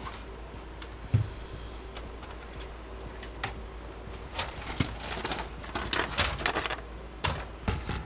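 Clicks and knocks of bench equipment being handled: a digital inspection microscope on its stand swung into place and a motherboard set down on a silicone work mat. One sharp knock about a second in, then irregular clattering clicks from about halfway on.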